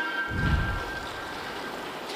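A short news-broadcast transition sound: a held electronic chime chord that fades away over about two seconds, with a low rumble under its first second.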